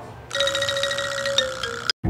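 A steady ringing tone, like a phone ringtone, starting shortly after the beginning and cut off abruptly near the end.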